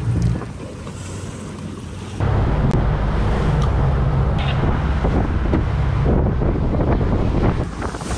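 Boat running offshore: wind buffeting the microphone over the rush of water along the hull and a steady low rumble. It is quieter for the first two seconds, then jumps louder and stays so.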